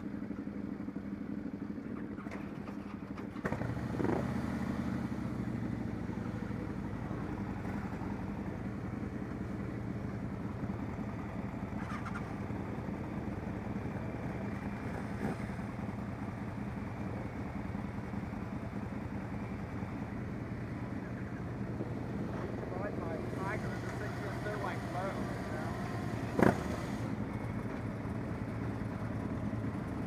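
Motorcycle engines idling steadily in a group, with the engine sound getting louder about three and a half seconds in. One sharp click stands out near the end.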